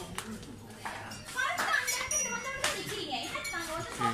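Voices of adults and children talking and chattering nearby, with a few sharp knocks among them.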